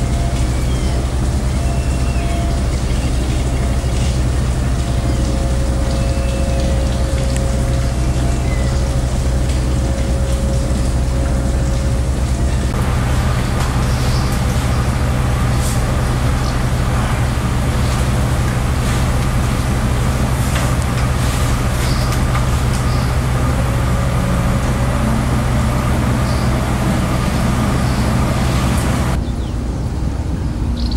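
Steady low hum and rumble of a river cruise ship's engines, heard from the deck, with a faint steady whine over it for the first dozen seconds.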